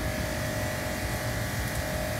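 A steady machine hum: a low rumble with a thin, level two-tone whine above it that neither rises nor falls.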